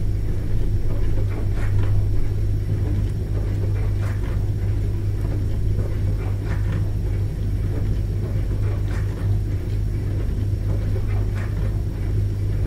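Dishwasher running mid-cycle: a steady deep hum from the motor and pump, with short irregular splashes of water spraying against the dishes.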